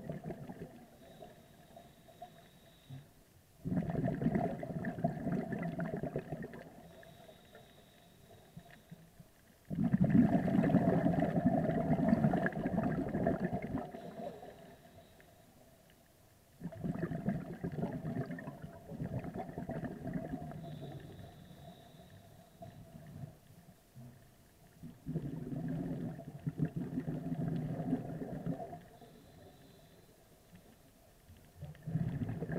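A scuba diver's breathing heard underwater: four bursts of rumbling exhaled bubbles from the regulator, each starting suddenly and fading, about every six to eight seconds, with quiet gaps between that carry a faint thin high tone.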